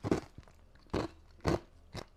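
Ice from a cola being crunched between the teeth: about four short, sharp crunches spaced roughly half a second apart.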